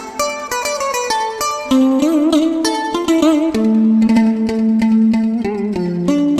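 Instrumental break in a Vietnamese tân cổ (cải lương) song: a plucked-string melody with sliding, bent notes, with keyboard accompaniment, settling on a long held low note in the second half.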